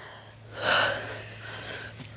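A woman's heavy, effortful breath during bicycle crunches: one loud breath about half a second in, then fainter breathing.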